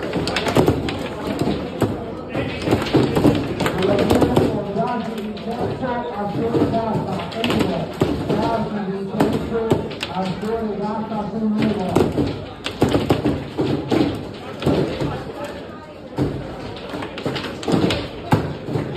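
Table football being played: repeated sharp knocks and taps as the plastic player figures strike the ball and the ball hits the table's walls, with rods clacking, over voices of people around the table.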